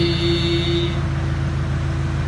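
A steady low mechanical drone with a fast, even pulse, like a motor or machinery running. A higher held tone sounds over it for about the first second.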